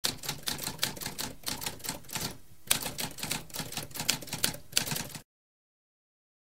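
Typewriter keys clacking in quick succession, several strokes a second, with a short pause a little past two seconds; the typing stops abruptly a little past five seconds.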